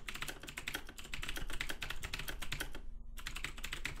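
Fast typing on a computer keyboard: a quick, steady run of keystrokes with a brief pause about three seconds in.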